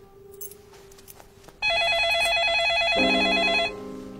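Telephone giving an electronic warbling ring: one burst of about two seconds that starts about a second and a half in and cuts off suddenly.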